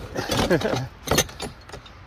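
A lamp cord being pulled out of a plastic tote, with the items inside shifting and knocking against each other and one sharp knock just over a second in. A brief voice is heard around half a second in.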